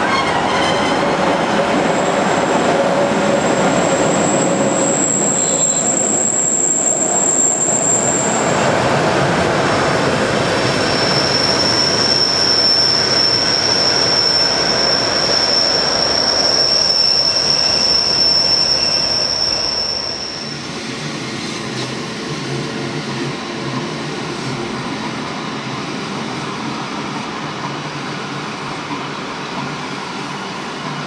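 Metre-gauge Rhaetian Railway train on the Bernina line rolling past on a tight curve, its wheels squealing in two long, high-pitched tones, the first a couple of seconds in and the second from about a third of the way through. The running noise drops about two-thirds of the way in as the last wagon, a tank car, goes by.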